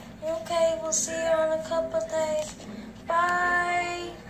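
A child singing in a high voice, holding long notes with a short break about three seconds in.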